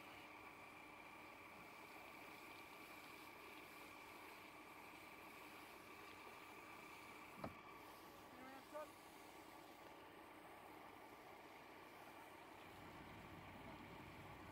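Near silence: a faint steady hum, broken by a single sharp click about seven and a half seconds in.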